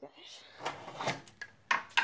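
A room door being shut: low shuffling and handling noise, then two sharp knocks of the door and its latch near the end.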